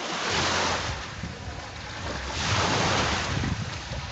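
Small lake waves washing onto the shore, two surges about two seconds apart, with wind rumbling on the microphone.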